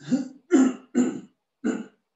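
A man coughing to clear his throat: four short, loud coughs in quick succession.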